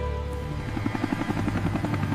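Helicopter rotor sound effect, a rapid even chopping beat that comes in about half a second in, over background music.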